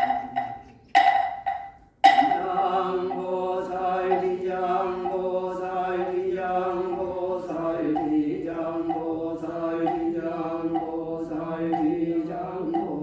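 Three ringing percussion strokes in the first two seconds, then a Buddhist chant: one voice intoning a steady, rhythmic run of short syllables on a nearly level pitch.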